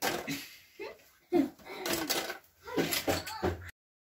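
Short snatches of speech over some handling clatter of toys being gathered up, which cut off abruptly to silence near the end.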